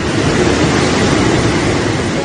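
Loud, steady rushing of a flash-flood torrent of muddy water pouring down a hillside.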